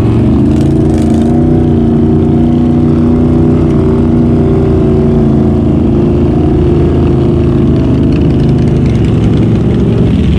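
Can-Am Renegade XMR 1000R's V-twin engine running steadily and loud, close to the microphone, with a brief dip in pitch just after the start and a slight easing near the end.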